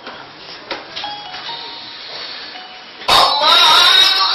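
A pause in a Quran recitation with room noise and a few brief faint tones, then about three seconds in the reciter's amplified voice comes in suddenly and loudly on a held, wavering chanted phrase.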